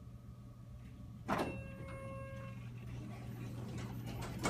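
Hydraulic elevator landing doors opening: a sharp clunk about a second in, a brief ringing tone, then the doors sliding, over a low steady hum.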